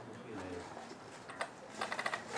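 Faint clicks and light knocks from hands gripping the plastic body shell of an RC off-road truck as it is freed to be lifted off, with a soft low hum of a person's voice near the start.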